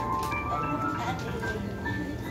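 Live band playing softly with a few sustained notes, under people talking in the room.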